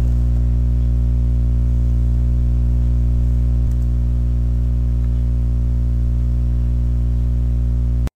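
Steady electrical mains hum with a stack of low overtones and a layer of hiss.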